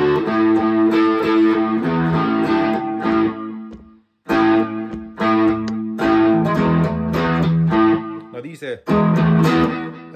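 Solid-body electric guitar playing a riff of fretted notes over ringing open-string drone notes. It breaks off for a moment about four seconds in, then starts again.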